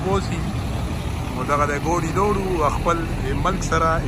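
Steady road-traffic rumble, with a truck going by close up, under someone talking in the second half.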